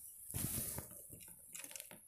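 Faint handling noise from fingers turning a small diecast model truck: a soft rustle about half a second in, then a few light clicks near the end.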